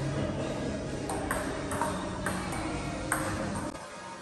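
Table tennis ball clicking off paddles and the table in a short rally, about six hits between one and three seconds in.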